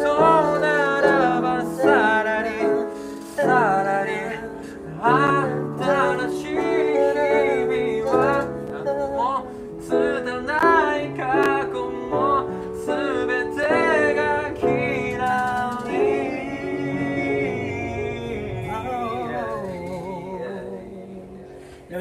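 A man singing a Japanese pop ballad while accompanying himself on an upright piano, the voice gliding and wavering over sustained chords. The music tapers off near the end.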